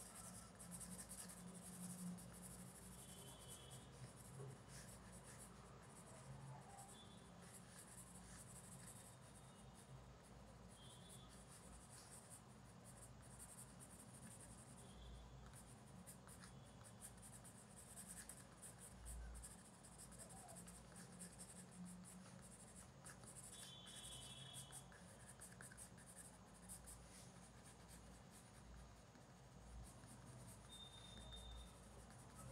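Faint scratching of a coloured pencil on paper in quick repeated strokes as lines are sketched into a drawing.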